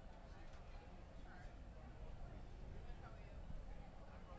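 Faint outdoor arena ambience: indistinct voices from the crowd murmuring over a low rumble.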